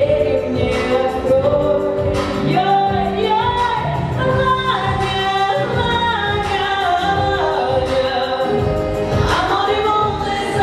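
A pop song: a woman singing a melody into a microphone over backing music, played through the hall's loudspeakers.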